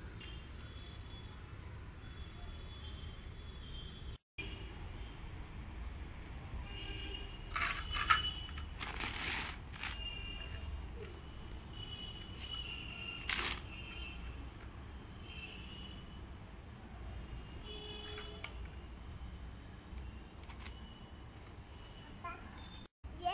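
Background ambience: a steady low hum with faint high chirping, broken by a few brief scrapes about eight, nine and thirteen seconds in.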